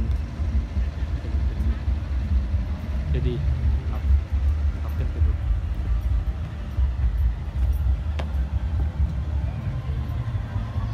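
A steady low rumble, with a man's voice briefly about three seconds in and a single sharp click about eight seconds in.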